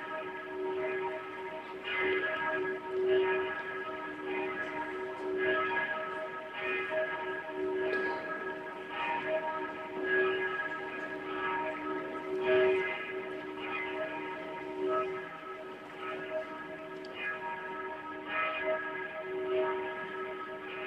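Bells ringing: strike after strike, roughly one a second but unevenly, each leaving a lasting ring that overlaps the next.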